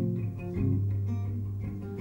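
Live band music in a short instrumental gap between sung lines: plucked guitar notes ringing out over a sustained low bass note.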